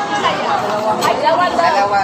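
Background chatter: several overlapping voices in a busy restaurant dining room.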